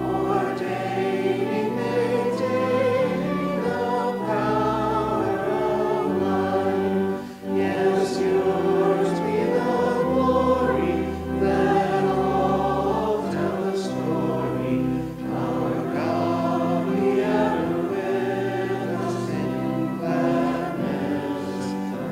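Church pipe organ playing a slow hymn in long held chords, with voices singing along.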